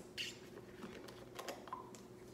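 A few light plastic clicks and taps as a plastic juice bottle is handled and its screw cap is twisted off.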